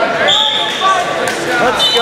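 Spectators yelling and shouting over one another in a large echoing gym, with a short steady whistle blast about a third of a second in.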